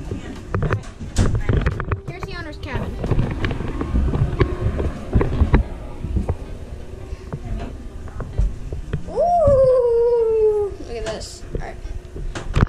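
Repeated knocks, bumps and rustling from a handheld camera carried through narrow cabin doorways. Near the end comes one drawn-out tone, falling in pitch over about a second and a half.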